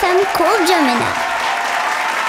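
A young girl's voice finishing a wavering phrase into the microphone, cut off about a second in, then audience applause.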